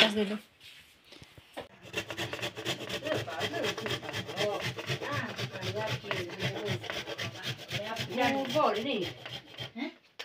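Food being grated by hand on a metal box grater: a fast, steady run of scraping strokes that starts about two seconds in.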